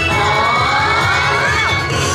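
Yosakoi dancers shouting together, a group yell that rises in pitch for about a second and a half and then drops, over music with a steady low beat.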